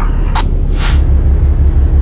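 Wind buffeting an outdoor microphone on a ship's open deck, a heavy low rumble that grows stronger just under a second in, with a brief hiss at about the same moment.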